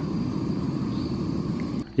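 Portable gas stove burner running steadily at high flame, a low rushing noise, heating a paper pot of water at the boil. It cuts off abruptly near the end.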